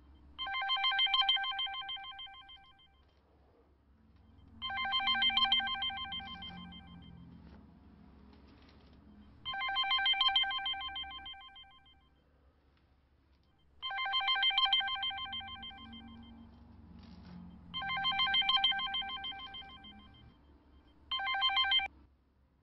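A mobile phone ringing with an old-style telephone-bell ringtone. Rings about two seconds long repeat about every four seconds, six in all, and the last is cut off short.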